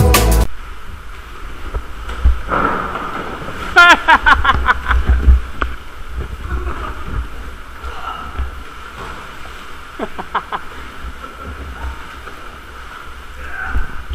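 Seawater sloshing and lapping around kayaks in a sea cave, over a low wind rumble on the microphone. A person's voice calls out about four seconds in and briefly again around ten seconds in.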